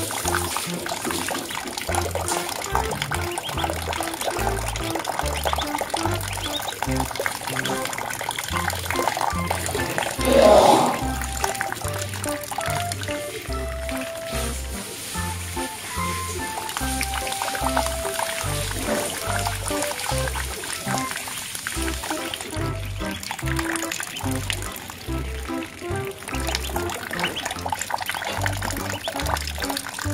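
Background music with a steady low beat, over water trickling and splashing as ducklings paddle in a shallow pool. A brief loud pitched sound breaks in about ten seconds in.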